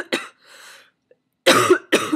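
A sick woman coughing into her fist: one cough right at the start, a quieter breath in, then two loud coughs close together about a second and a half in.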